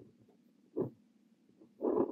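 Extra-fine nib of a brass Kaweco Liliput fountain pen scratching across notebook paper while writing Korean characters: a short stroke about a second in and a longer, louder stroke near the end.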